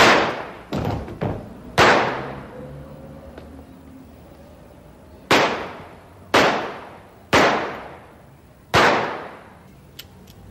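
Revolver shots: six loud sharp shots, each trailing off in a long echo. The first two are nearly two seconds apart with two fainter cracks between them, and the last four come about a second apart.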